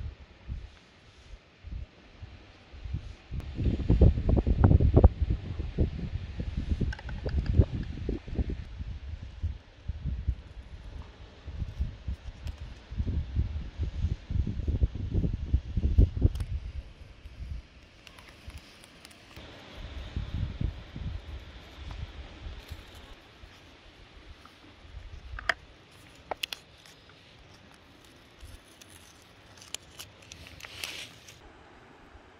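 Wind buffeting the microphone in irregular low rumbling gusts, the loudest in the first half. Blue masking tape is peeled off the paper with soft tearing and crackling.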